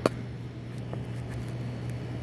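Small metal parts of a model-train motor being handled: one sharp click at the very start and a faint tick about a second later, over a steady low hum.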